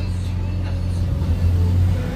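A motor vehicle's engine running close by on the street, a steady low rumble that swells a little in the second half.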